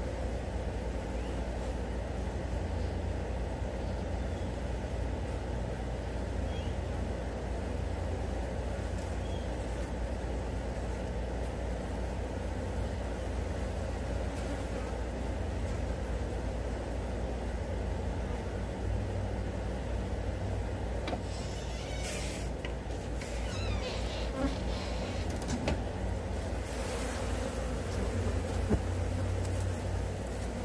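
A swarm of flies buzzing steadily, with a low rumble beneath it and a few brief rustling sounds about three-quarters of the way in.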